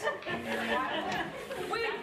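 Indistinct chatter of several people talking at once, with one voice starting to speak near the end.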